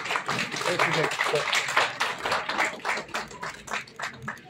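Audience applauding, many hands clapping at once, with some voices underneath.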